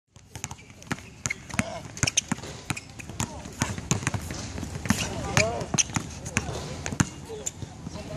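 A basketball being dribbled hard and fast on an outdoor court: a quick, unevenly spaced run of sharp bounces, about three a second.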